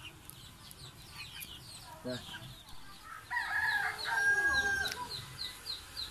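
A rooster crows once, starting a little past three seconds in, a long call of under two seconds and the loudest sound here. Many short, high chirps from small birds go on around it.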